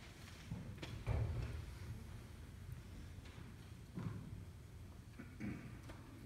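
Faint room noise with a few soft, scattered knocks and rustles, the loudest about a second in.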